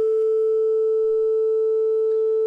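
A single steady 440 Hz sine tone (concert A) from a tone-generator app on a smartphone, held at one even pitch and loudness with no beating.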